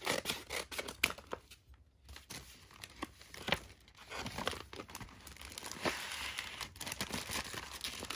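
Scissors snipping, and paper packaging being torn open and crinkled by hand. Sharp separate snips come in the first half, and the rustling and tearing grow denser and steadier in the second half.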